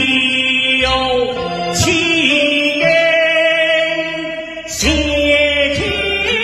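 Male voice singing a Teochew opera aria through a handheld microphone, holding long notes with pitch slides at each new syllable, over a low instrumental accompaniment.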